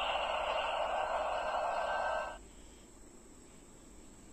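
Electronic finishing-move sound effect for Glitter Tiga from a Black Spark Lens transformer toy's built-in speaker: a steady hiss that cuts off suddenly a little over two seconds in.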